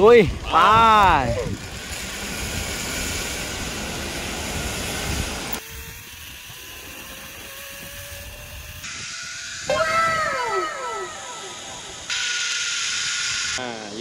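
Zipline trolley running along a steel cable, with wind rushing over the microphone and a faint whine that rises slowly in pitch as the rider picks up speed. The noise drops and jumps abruptly at a few points. About ten seconds in, a voice calls out a few times with falling pitch.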